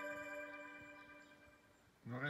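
A held musical tone rich in overtones, played by a smartphone through a wooden back-loaded horn dock, dies away over the first second and a half as playback ends.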